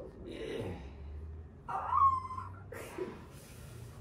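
A woman's brief high-pitched vocal squeal about two seconds in, sliding slightly down in pitch, with breathy exhales before and after it: her reaction to a chiropractic traction pull on her ankle.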